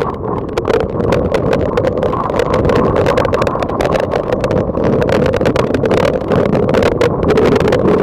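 Heavy monsoon rain with wind buffeting the microphone of a phone held out in the downpour: a loud, steady rush filled with many sharp ticks of drops striking the phone.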